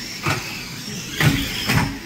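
Radio-controlled stock cars racing: a faint steady motor whine broken by three sharp knocks of cars colliding, about a third of a second in, just past a second and near the end, the last two the loudest.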